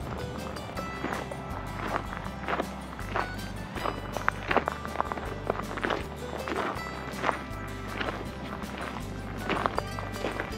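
Background music with a steady bass line, over footsteps on loose gravel at about two steps a second.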